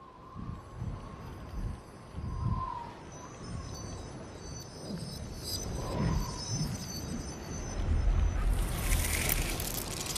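Studio-logo sound design: low whooshing swells with high, tinkling chime-like shimmer in the middle, building to a louder rushing swell in the last second and a half.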